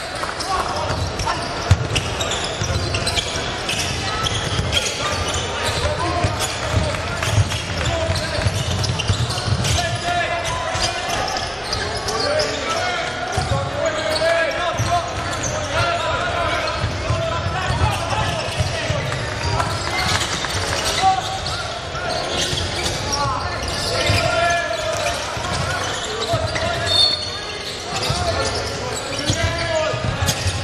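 Live basketball game sound in a large indoor hall: a ball bouncing on the wooden court among indistinct voices of players and spectators.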